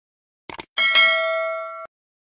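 Subscribe-and-bell animation sound effect: a quick double click, then a bright notification-bell ding that rings for about a second and cuts off suddenly.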